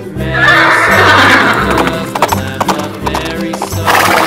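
Horse sound effect: a loud whinny, then hooves clip-clopping, over cheerful background music.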